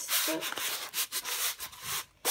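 Rubbing and rustling as a diamond painting canvas is handled close to the microphone, in a series of uneven scratchy strokes.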